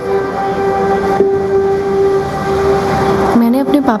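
Soundtrack of an ad played over a hall's speakers: a steady held musical note with overtones over a hiss of background noise, with a girl's voice coming back in near the end.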